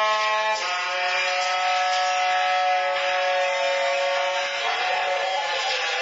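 Saxophone played live: after a quick change of notes it holds one long sounding of several tones at once for about four seconds, then breaks into a rougher, noisier sound near the end.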